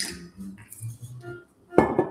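Glass bottles handled at a counter, with one sharp glassy clink near the end, over faint background music.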